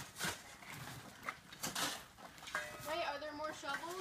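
Shovels and hoes scraping and chopping into dry dirt, a few separate strokes in the first two seconds. Voices talk in the background from about halfway.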